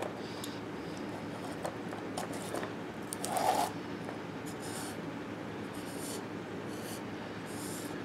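Fingers scraping and gathering dry fatwood shavings on a wooden cutting board: short, light scratchy rustles, with a brief louder rub about three and a half seconds in.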